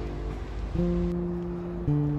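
Background music: held chords that change about a third of the way in and again near the end.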